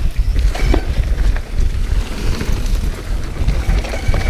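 Wind buffeting the microphone as a mountain bike descends a dirt trail at speed, with tyres running over dirt and scattered clicks and rattles from the bike.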